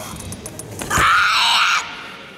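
A female karateka's kiai: one loud shout lasting under a second, starting about a second in, with a sharp thud just before it.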